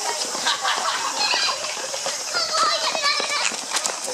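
Children's voices talking and calling in the background, high-pitched and coming and going; no hornet sound stands out.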